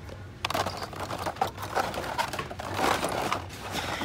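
Plastic blister packs of die-cast toy cars clicking and rustling as a hand flips through them on store display pegs, in an irregular patter of small knocks.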